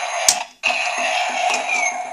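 Kamen Rider Fourze Driver toy belt playing an electronic sound effect through its small speaker as its Astro Switches are flipped off: a short burst, a brief break about half a second in, then a steady hissing electronic sound with a high tone that falls near the end. A switch click is heard in the first half.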